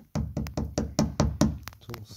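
A fingertip tapping quickly on the hardened fibreglass-resin laminate, about five sharp taps a second, to check that the resin has set.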